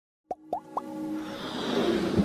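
Intro sound effects for an animated logo: three quick pops rising in pitch, about a quarter second apart, followed by a swelling music build.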